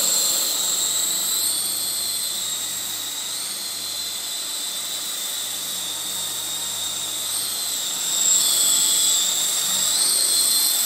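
Sky King toy RC helicopter in flight: a steady high-pitched whine from its small electric motors and spinning rotors. The pitch wavers up and down as the throttle changes, and it grows louder about eight seconds in.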